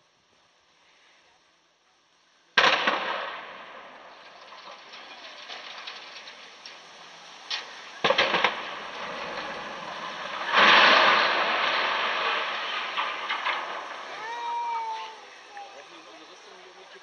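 Explosive demolition charges blowing up a brick factory chimney: a sudden loud bang about two and a half seconds in with a rumbling tail, a second sharp crack about eight seconds in, then a long, loud wash of noise from about ten and a half seconds that slowly dies away.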